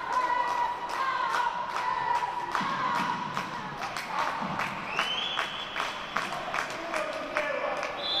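Indoor handball match: repeated sharp knocks from the ball and players on the wooden court, under a held, wavering chant or singing from spectators. A high thin squeal joins about five seconds in.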